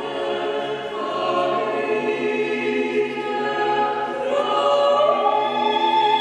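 Choral music: slow, held chords sung by a choir, with the harmony shifting about a second in and again a little after four seconds.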